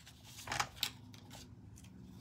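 Sliding blade of a Cricut paper trimmer cutting through a sheet of paper, in a few short strokes about half a second to a second and a half in.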